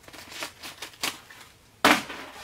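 S-Cut emergency cutter's circular blade slicing through Cordura nylon pack fabric in a run of short scratchy cutting strokes, then one sudden, sharp, loud rip near the end.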